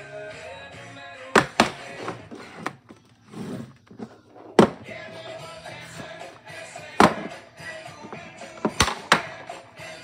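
Background music playing steadily, broken by about half a dozen sharp clicks and knocks as a plastic DVD case is handled and opened.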